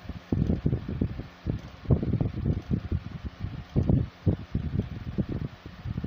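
Air from a running ceiling fan buffeting the phone's microphone: irregular low rumbling gusts that rise and fall several times a second.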